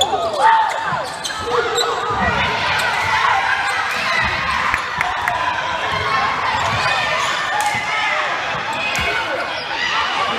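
Basketball bouncing on a hardwood gym floor during play, with voices calling out across the gym.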